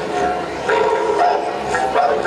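Didgeridoos droning in a live ensemble, with several held higher tones that step to new pitches a few times and grow louder a little under a second in.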